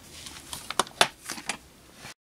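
A few small clicks and taps, the loudest about a second in: a small screwdriver and wiring being handled and set down on a wooden desk.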